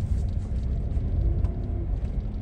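Low steady rumble of a small car's engine and tyres heard inside the cabin while it creeps along at low speed.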